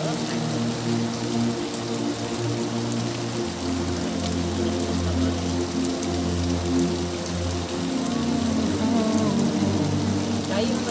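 Steady rain and water splashing down from the collapsed road edge into the landslide hole. Underneath is music with sustained low notes that change a few times.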